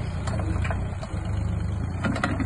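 Mini digger's diesel engine running steadily while its arm raises the bucket, with a brief dip in level about a second in.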